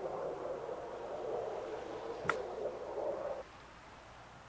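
A golf club chipping a ball out of deep greenside grass: one sharp click a little past halfway. Under it a steady rushing noise that cuts off abruptly near the end.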